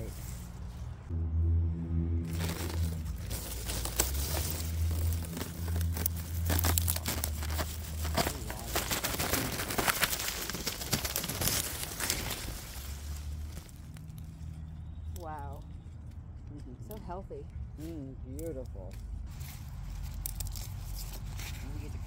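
Leafy arugula plants rustling and crackling as they are pulled up and handled close to the microphone, densest in the middle. Under it, a low steady hum runs through the first several seconds.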